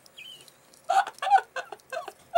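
A woman laughing in short, rapid bursts, about three a second, starting about a second in. A brief faint high squeak comes before it.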